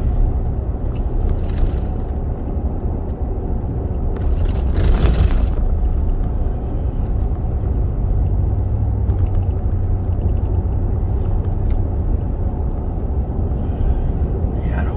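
Pickup truck driving along a country road towing a trailer, heard from inside the cab: a steady low drone of engine and tyre noise, with a brief louder rush of noise about five seconds in.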